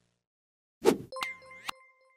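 Outro logo sound effects: after a moment of silence, a short swoosh about a second in, then an electronic ding that rings on, with two clicks and quick sliding tones.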